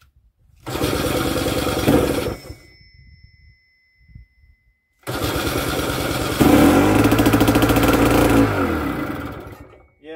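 A PD-10 two-stroke starting engine on a Belarus MTZ tractor being started twice. A short burst of cranking comes about a second in. Around the middle it catches and runs briefly, then its note drops and it dies away, starved of fuel, which the owner blames on a clogged fuel filter.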